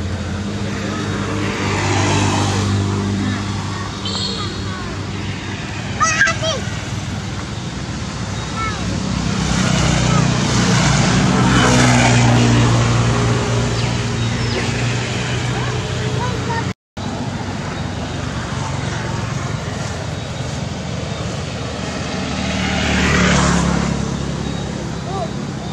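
Road traffic going by: motorbike and car engines swell and fade as they pass, loudest about twelve seconds in. There is a brief sharp knock about six seconds in.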